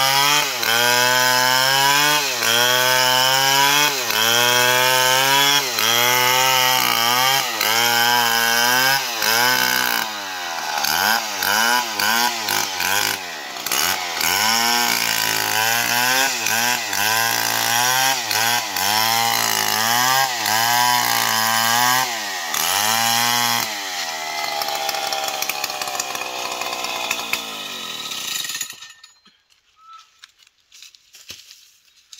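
Stihl 070 two-stroke chainsaw ripping lengthwise through a jackfruit log. Its engine pitch dips and recovers about once a second under load, then wavers faster and more irregularly. Later the pitch sinks steadily for several seconds, and the saw stops abruptly shortly before the end.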